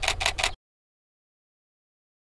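Canon EOS 80D DSLR shutter firing in a rapid continuous burst, about seven clicks a second, which cuts off abruptly about half a second in, followed by total silence.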